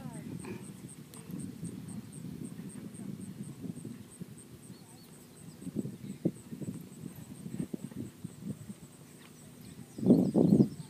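Horse cantering on an arena's sand footing: soft, faint hoofbeats over low outdoor background noise, a little louder for a few seconds past the middle.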